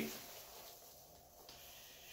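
Near silence: faint room tone in a pause between speech, with one faint click about one and a half seconds in.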